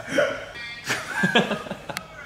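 People laughing in short, choppy bursts.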